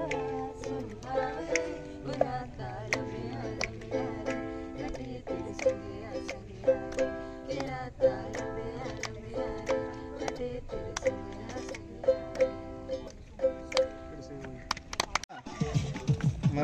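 Ukulele strummed in a steady rhythm of chords, about one to two strums a second, the music breaking off shortly before the end.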